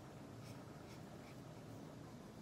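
Felt-tip marker pen rubbing on paper in short, faint strokes, about two a second, as an area is coloured in.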